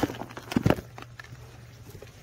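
Hands handling coarse compost debris on a worm-harvesting screen tray: a few short knocks and rustles, the loudest about half a second in, over a steady low hum.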